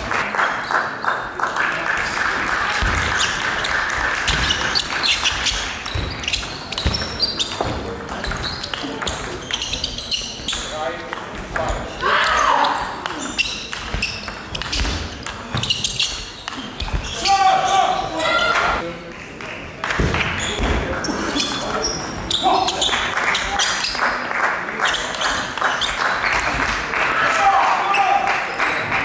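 Table tennis rallies: the ball clicking on the table and off the paddles in quick back-and-forth exchanges. More ball clicks come from neighbouring tables, echoing in a large sports hall.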